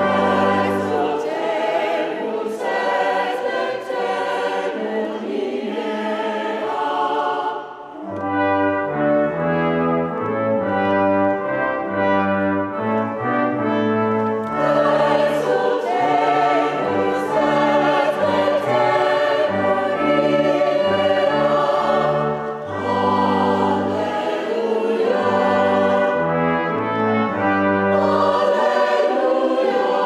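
A hymn sung by choir and congregation with brass accompaniment, in long held chords that move step by step, with a short break between phrases just before a third of the way in.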